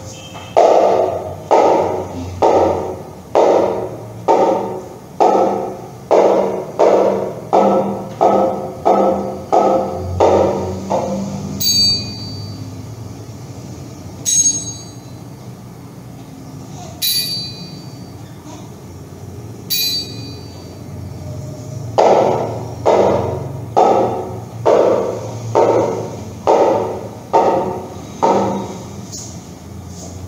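Percussion struck steadily, about two strokes a second, each stroke dying away quickly. In the middle the strokes stop and four sharp, high, ringing metallic strikes sound a few seconds apart. Then the steady strokes resume.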